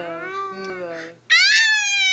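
Playful open-mouthed 'aah' voicing from a woman and a toddler face to face, then a loud, high-pitched squeal a little over a second in, held for about a second.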